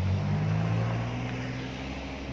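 A motor vehicle's engine running close by: a low, steady hum that slowly fades.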